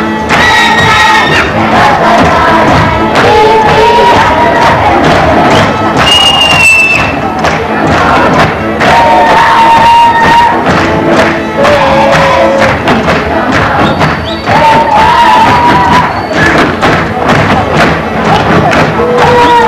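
Live Hungarian folk dance music from violins and a double bass, with a steady beat, over the steps and voices of a group of dancing children.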